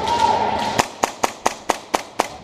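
Airsoft gas blowback pistol, a Tokyo Marui Hi-Capa 5.1, firing six quick semi-automatic shots, about four to five a second, starting near the middle.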